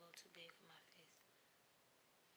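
A faint, soft voice for about the first second, then near silence: room tone.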